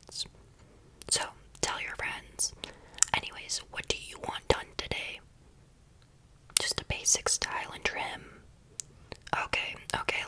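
A woman whispering close to the microphone in short phrases, breaking off twice for about a second.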